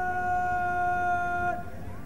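A parade commander's drawn-out shouted word of command, one long vowel held on a single, slightly falling pitch for about a second and a half, then cut off.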